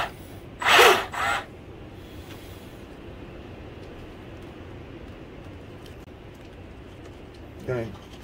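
RC boat drivetrain spinning on the bench: the drive motor turns a .150 flex shaft through its Teflon liner and a freshly greased strut with a steady, even running sound.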